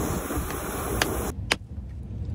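Steady outdoor rushing of wind and water with a low rumble, and a few faint clicks; the hiss cuts off abruptly about two-thirds of the way in, leaving a quieter rumble.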